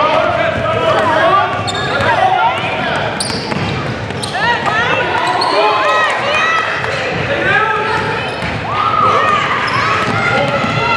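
Basketball game on a hardwood gym floor: a ball dribbled and bouncing, and sneakers squeaking in many short, sharp chirps as players cut and stop.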